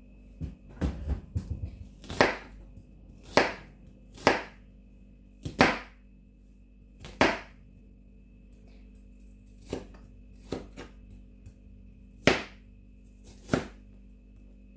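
Kitchen knife cutting an onion on a plastic cutting board: sharp knocks of the blade against the board, irregular and roughly one a second, with a quicker run of cuts in the first two seconds, over a faint steady hum.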